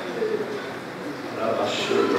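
A man preaching in Portuguese into a handheld microphone, his voice amplified, in short phrases with a pause between them.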